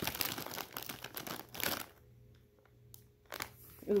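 A plastic chip bag crinkling as hands reach in and pull out chips: dense crackling rustle for about two seconds, then quieter, with one short click about three seconds in.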